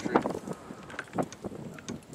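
Wind buffeting the microphone, with a few scattered knocks and clicks. The loudest knock comes just after the start and others fall about a second in and near the end.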